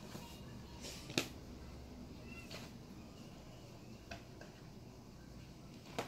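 A few soft taps and clicks over quiet room tone, the sharpest about a second in: a toddler's hands patting and turning the thick cardboard pages of a board book.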